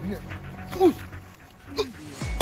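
Two short pitched cries, each rising and falling in pitch, a loud one just under a second in and a weaker one near the end.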